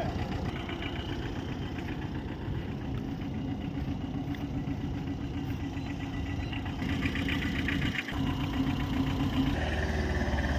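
Tata Ace Gold mini-truck's engine idling steadily, a little louder in the last few seconds.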